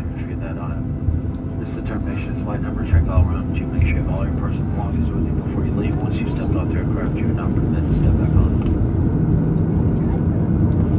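Boeing 737 cabin during taxi: the steady low rumble of the jet engines at idle and the wheels rolling, slowly getting a little louder, with passengers talking indistinctly over it.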